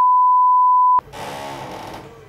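A steady, single-pitched censor bleep masking spoken words (an address), cutting off suddenly about a second in.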